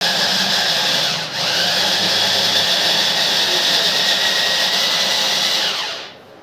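Small press-top electric chopper running at full speed, grinding roasted tomatoes, onion and garlic into a purée. Its steady whine dips briefly about a second in, then falls away as the motor stops near the end.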